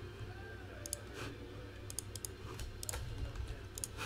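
Several faint, scattered computer clicks over a low steady hum.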